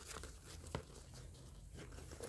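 Faint rustling of a cloth bag and its fabric straps being handled, with one small click about three quarters of a second in.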